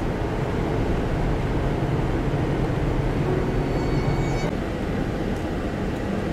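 Steady road and engine noise inside a car's cabin at highway speed, with tyres running on a cleared expressway. A faint, brief high whine comes about two-thirds of the way in.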